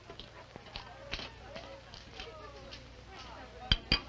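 Faint background voices with a few light clicks, then two sharp knocks in quick succession near the end.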